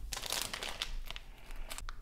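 Clear plastic bag of wax melts crinkling as it is handled, a dense run of crackles and sharp ticks.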